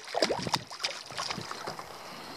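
Light water and wind sounds around a drifting canoe, with a couple of sharp knocks in the first half second.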